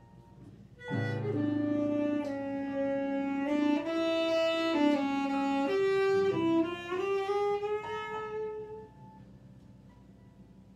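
Tenor saxophone playing a slow improvised jazz line of long held notes with small bends and slides, starting about a second in and fading out near the end, over sparse piano notes.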